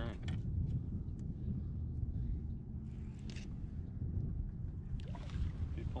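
Steady low rumble of a small boat sitting on moving water, with a few faint clicks.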